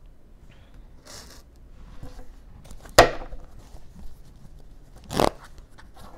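Tarot cards being drawn and laid on a table: a brief rustle about a second in, a sharp card snap about halfway, and another short rustle near the end.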